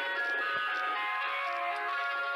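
Ice cream van chimes playing a tune: a bright electronic melody of held, ringing notes moving from one pitch to the next.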